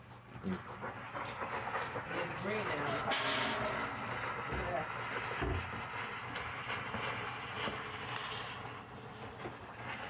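H2O Mop X5 steam mop hissing steadily as it puts out steam onto the floor tile, now heated up; the hiss grows stronger about three seconds in and eases near the end.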